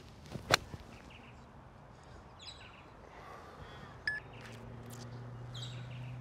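An eight iron striking a golf ball off grass turf: one sharp crack about half a second in.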